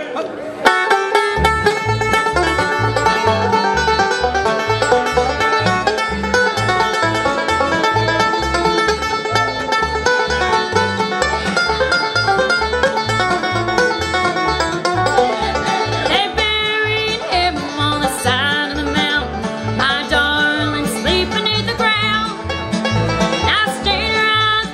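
A live bluegrass band plays at a steady tempo, led by a five-string banjo, with fiddle, guitar and a steady bass beat. The music kicks in under a second in, and a woman's lead vocal joins about two-thirds of the way through.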